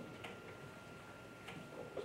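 Quiet room tone of a large meeting hall with a few faint, scattered clicks and a faint steady high hum.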